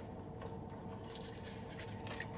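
Faint chewing of a soft tortilla wrap, with soft scratchy sounds over a low steady hum.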